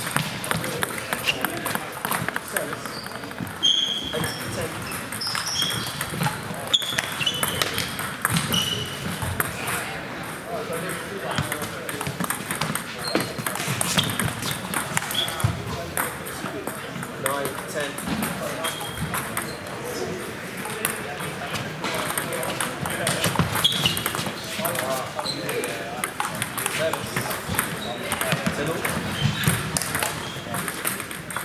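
Table tennis balls clicking off bats and tables at several tables at once, scattered irregular clicks with short high pings, over a murmur of voices.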